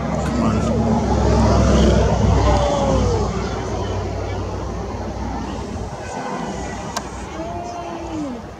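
Excited voices of onlookers calling out over a deep low rumble. The rumble is loudest in the first few seconds and then eases off.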